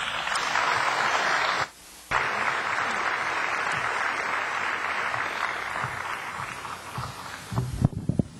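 Audience applauding: a dense, steady clatter of clapping that drops out for a split second about two seconds in, then carries on and slowly thins out. A few low knocks come near the end.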